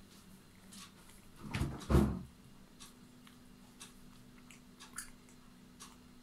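Two dull knocks about half a second apart, a second and a half in, with faint scattered small clicks before and after them: handling noise.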